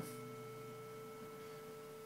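Faint, steady 440 Hz sine-wave test tone passed through a Maxon OD808 overdrive pedal, carrying weak odd-order harmonics. The harmonics are thinning as the drive is turned down, so the tone is going from soft-clipped towards clean.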